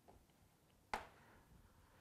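Near silence, broken once about a second in by a single short click: a plastic player counter set down on a magnetic tactics board.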